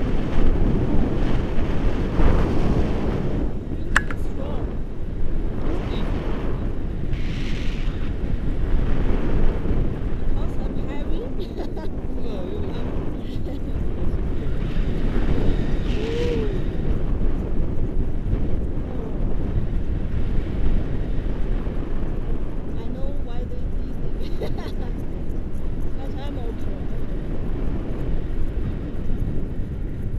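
Wind rushing steadily over an action camera's microphone in flight under a tandem paraglider, loud and low.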